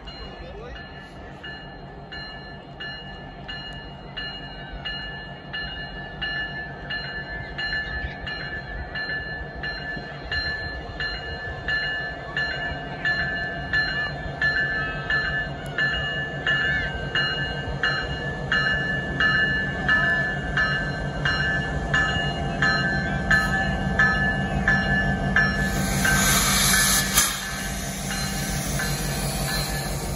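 Diesel locomotive approaching and drawing alongside, its rumble growing steadily louder, with a bell ringing rapidly and steadily until shortly before it passes. A loud burst of hiss comes a few seconds before the end as the locomotive goes by.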